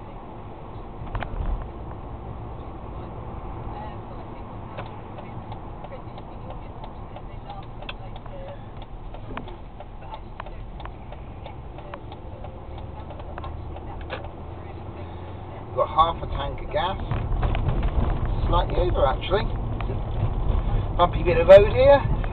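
Car cabin noise from a moving car: a steady low engine and tyre rumble, growing louder about two thirds of the way through.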